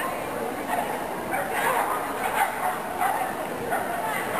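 Dogs barking and yipping at short intervals over a background murmur of people talking.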